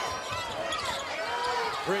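Basketball being dribbled on a hardwood court, with sneakers squeaking in short rising and falling chirps, over steady arena crowd noise.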